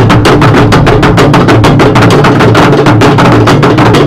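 Obonu drum ensemble playing: tall Ga obonu drums struck with sticks alongside smaller hand-played drums, in a fast, dense rhythm of many strokes a second. The drumming is loud and keeps on without a break.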